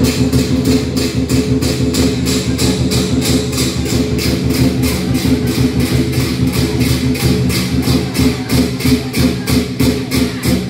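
Lion-dance percussion: drum and cymbals beating a fast, even rhythm of about four strokes a second over a steady ringing.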